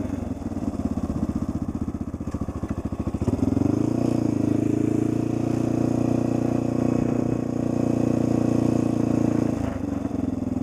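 Honda XR600R's air-cooled single-cylinder four-stroke engine under way, running at low revs with its separate firing pulses audible. About three seconds in the revs rise and it turns louder and steadier, holding that drone, with a short dip near the end.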